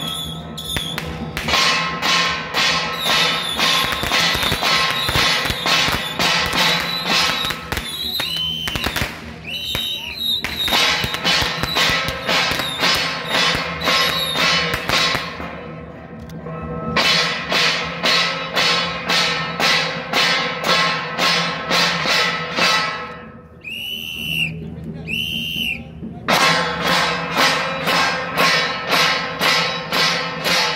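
A group of brass hand cymbals clashing in a fast, steady beat of about three strokes a second, each stroke ringing on. The beat stops briefly twice, and two short high tones sound about a second apart in the second stop.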